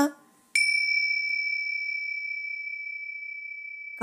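A single bell strike about half a second in, ringing with a clear high tone that slowly fades away.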